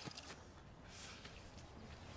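Near silence: faint room tone, with one faint short knock right at the start.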